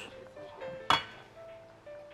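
A single sharp clink of cookware about a second in, ringing briefly, over faint background music.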